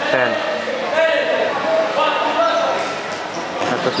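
Several men's voices shouting short calls, echoing in a large hard-floored hall as a dodgeball game opens, with the bounce of rubber dodgeballs on the floor.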